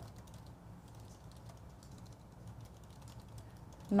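Faint, irregular clicking at a computer: keyboard keys and mouse being worked, over a low steady room hum.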